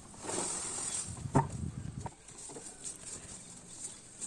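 Cut green fodder rustling as it is tipped out of a plastic can into a plastic drum feeder, with one sharp knock about one and a half seconds in; fainter rustling follows.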